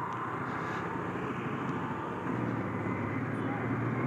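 Motorcycle riding along in traffic, a steady mix of engine running and wind rush on the microphone, getting a little louder just past halfway.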